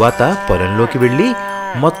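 A bull mooing: one drawn-out call that wavers in pitch, then holds steady, with another call beginning just before the end.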